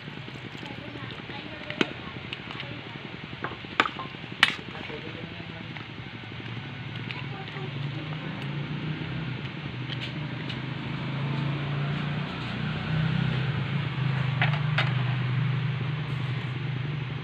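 A metal ladle clinks sharply against an aluminium soup pot a few times as the simmering soup is stirred, over a steady hiss. A low hum builds in the second half.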